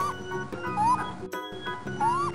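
Short rising animal calls, repeated about once a second, played as a raccoon's sound over background music.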